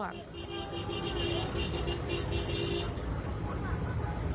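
A car horn beeping in quick repeated pulses, about four a second, for roughly three seconds, over a steady low rumble of passing vehicles and wind.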